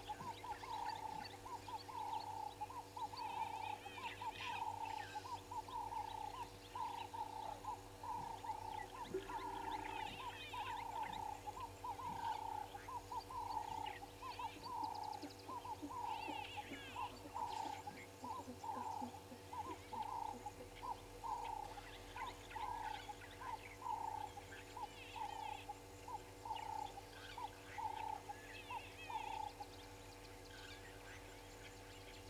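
An animal call, one short note repeated steadily about once a second, with other birds chirping higher at times.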